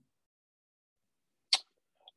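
Near silence, then about one and a half seconds in, a single brief, sharp puff of breath noise from a person.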